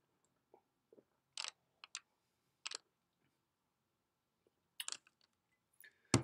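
A man sipping and swallowing beer close to a microphone: a handful of short, faint mouth and throat clicks between stretches of near silence.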